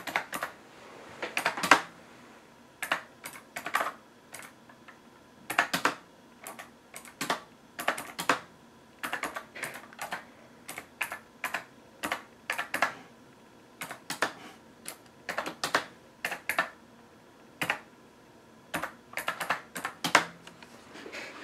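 Typing on a computer keyboard: irregular runs of key clicks with short pauses between them.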